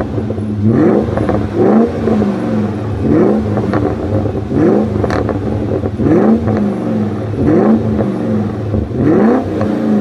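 BMW E34 540i's 4.0-litre V8 with a muffler-delete exhaust, revved in short blips from idle, about seven times, each rev rising sharply in pitch and falling back within about a second and a half. A single sharp click sounds about five seconds in.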